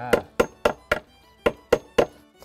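Small hammer tapping a nail through a split fish into a wooden plank: a run of quick, sharp taps, about four a second, with a brief pause about halfway through.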